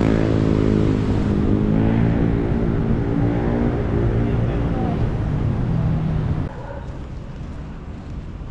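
Busy road traffic, with a vehicle engine running close by as a loud, steady hum that drifts slightly in pitch. About six and a half seconds in, it drops away abruptly to much quieter street ambience.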